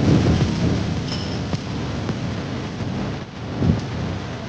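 Wind buffeting the microphone outdoors: an irregular low rumble with gusts at the start and again near the end.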